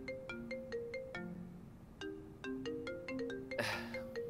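A mobile phone ringing with a melodic ringtone: a short tune of quick pitched notes that repeats about every two seconds.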